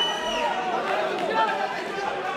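Crowd chatter in a large hall, many voices talking at once with no single speaker standing out. A steady high tone stops about half a second in.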